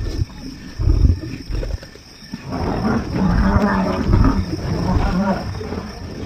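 Lion growling over its prey: a short low grumble about a second in, then a long growl from about halfway through to near the end.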